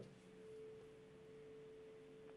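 Near silence with a faint, steady single tone humming underneath.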